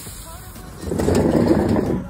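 Soda cans being shoved onto a spiked pegboard, puncturing and bursting: a loud, rough rush of noise that starts about a second in.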